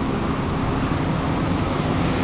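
A steady, unchanging low mechanical drone with a constant hum, like engine or traffic noise.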